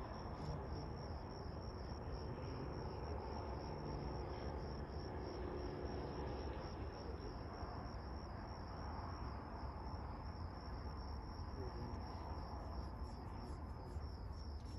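Crickets chirping in a steady high trill that runs on without a break, over a low, even background rumble.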